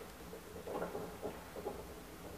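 A 1929 Otis traction elevator car, modernized by Schindler, travelling in its shaft: a faint low hum with a few soft knocks and rattles from about halfway in.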